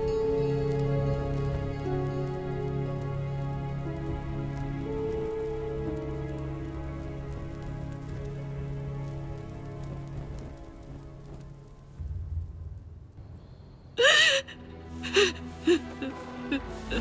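Soft background music of slow, held notes that fades out about twelve seconds in. Near the end a woman breaks into loud crying: one long wailing sob, then a few shorter sobs.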